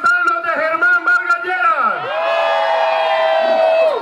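A man shouting into a microphone over a rally crowd: quick, rhythmic shouted phrases for about two seconds, then one long drawn-out held shout to the end.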